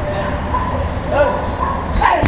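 An animal giving a few short, high yelps that rise and fall in pitch, over a steady low traffic rumble.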